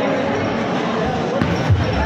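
A bowling ball released onto the wooden lane, starting to roll with a low steady rumble from about a second and a half in. Background music with a thumping beat and chatter from the bowling alley run under it.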